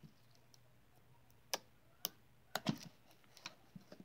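Homemade slime being squeezed and kneaded by hand, giving a handful of sharp, irregular clicks and pops as trapped air is squeezed out, from about halfway through, the loudest a little later.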